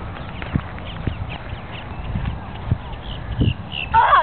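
Irregular low thumps of footsteps walking on grass, with handling rumble on the camera's microphone.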